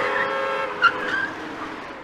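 Cars passing on a city street: engine and tyre noise with a few steady tones, fading toward the end, and one brief sharp sound a little under a second in.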